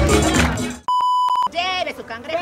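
A steady electronic beep, one tone held for about half a second, comes in as music and crowd noise fade out; voices follow straight after it.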